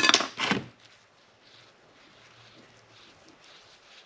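A plastic drinking straw stirring silica-thickened epoxy resin in a small plastic cup. A quick clatter of sharp taps comes at the start, then only faint stirring.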